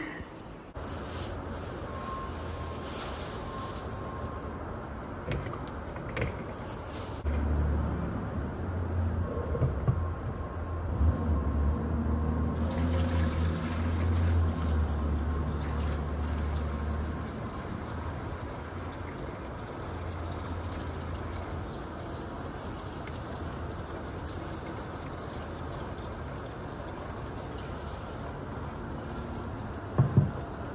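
Kitchen faucet running a steady stream of water into a plastic salad spinner bowl of greens as it fills.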